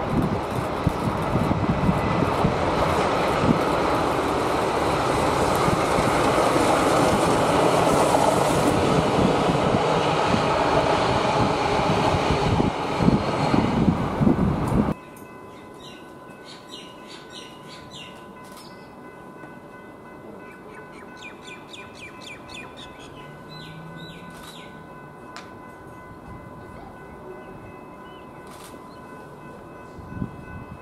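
Steamrail's K-class steam locomotive K183 running with a train of carriages, its sound growing louder as it approaches, with quick regular beats near the end, then cutting off suddenly about halfway through. After that, quieter background with birds chirping and a faint steady tone.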